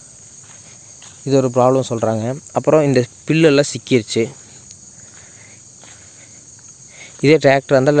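Steady high-pitched buzz of insects, likely crickets, under a man's voice, which talks in two stretches: about a second in, and again near the end.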